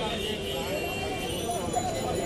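Crowd of people talking at once, a blur of overlapping voices with no single speaker standing out.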